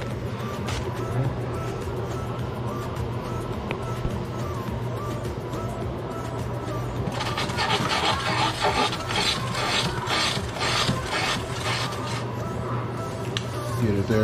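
A spoon scraping and stirring cubes of butter in a nonstick skillet. The scraping comes in quick, rhythmic strokes and is loudest for several seconds from about halfway through. Background music plays under it with a steady low hum.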